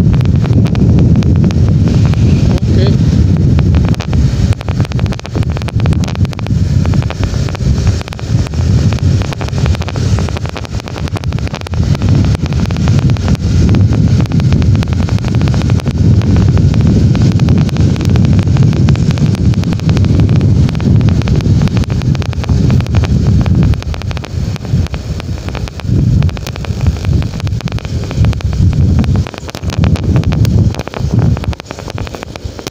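Wind buffeting the microphone of a motorcycle under way, a loud gusty rumble that eases briefly a few times, with the bike's engine and the road noise beneath it.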